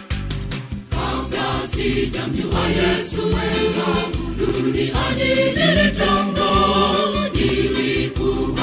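Gospel music: a choir singing over a steady beat, the voices coming in about a second in after a short plucked-string passage.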